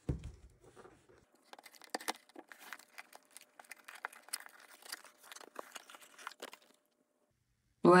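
A cardboard product box being handled and torn open by hand. A low thump comes as the box is turned over, then a few seconds of irregular tearing, crackling and rustling of cardboard and paper as the lid is pulled free.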